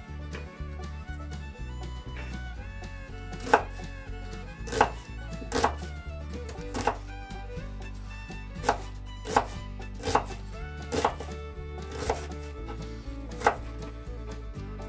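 Kitchen knife chopping an onion on a plastic cutting board: about ten sharp strikes at uneven intervals, starting a few seconds in.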